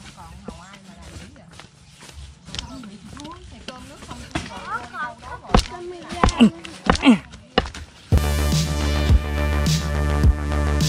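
A small hand trowel knocking and scraping into dry soil several times, loudest in a run of knocks between about five and eight seconds, with voices faintly in the background. About eight seconds in, electronic music with a steady beat cuts in and becomes the loudest sound.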